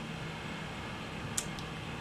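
Quiet room tone: a steady low background hiss, with one faint short click about one and a half seconds in.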